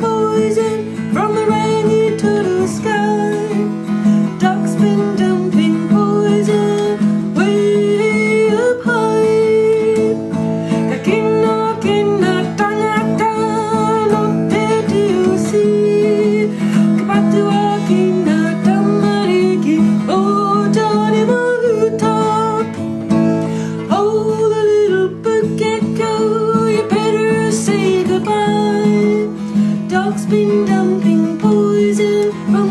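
Music: a strummed acoustic guitar holding steady chords, with a wavering, sliding melody line over it.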